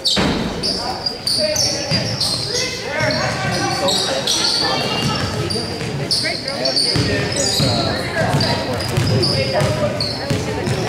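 Basketball game in an echoing gymnasium: voices shouting and calling, sneakers squeaking on the hardwood floor and a basketball being dribbled, with a sudden loud burst of sound right at the start.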